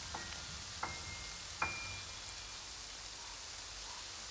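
Piano playing single high notes one at a time, each struck and left to ring, climbing step by step in pitch; the last comes about a second and a half in, and after it only a faint hiss remains.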